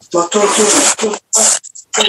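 Speech only: a person talking over a video-call connection.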